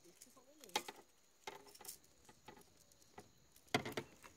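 Faint scattered clicks and light rattles of a fishing lure and line being handled in the hands, with a few louder ticks near the end.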